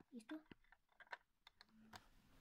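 Faint, scattered clicks and taps of plastic LEGO bricks being handled, with a short murmur of a voice just after the start.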